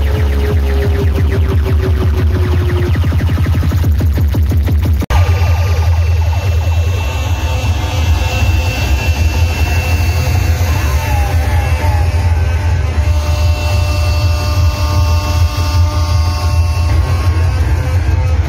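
Loud dance music with heavy, booming bass played through a large DJ speaker stack. It cuts out for an instant about five seconds in, then carries on with a steadier, more sustained section.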